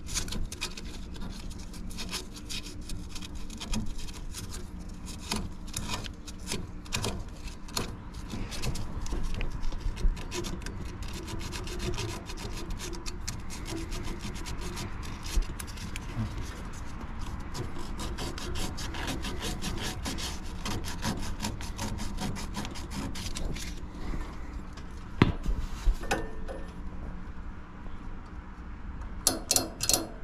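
Close handling noise of hands working wires and parts inside an air-conditioner condenser cabinet: a dense run of small clicks, rubs and scrapes of wire and metal, with a faint steady low hum underneath. Two sharper knocks come near the end.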